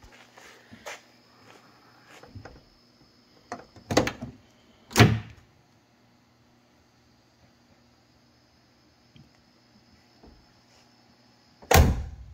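Driver's door of a 1969 Camaro opened, with two clunks about four and five seconds in, then shut with another clunk near the end.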